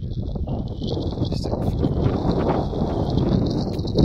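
Wind buffeting the phone's microphone, a dense, fluctuating low rumble.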